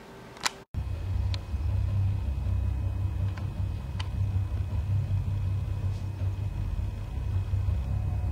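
A sharp click about half a second in and a brief dropout, then a steady low rumble with a few faint ticks over it.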